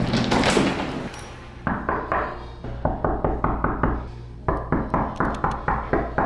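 Knuckles knocking on a hotel room door: repeated sharp knocks in short clusters, beginning about a second and a half in and coming faster, about four a second, near the end.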